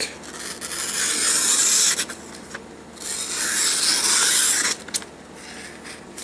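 A Mora knife blade slicing through a hand-held sheet of printer paper in two long, hissing cuts, the second starting about three seconds in. It is an edge test on a new knife, and the cut is rough enough that the owner wonders whether the edge isn't perfect.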